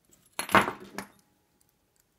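Keys jangling on a ring and metal padlocks clinking as they are handled: a short jingling clatter about half a second in, ending with a click at about one second.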